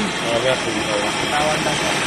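Handheld gas brazing torch burning with a steady hiss.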